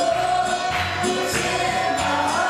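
Live gospel praise music: voices singing a held line over a band, with jingling percussion.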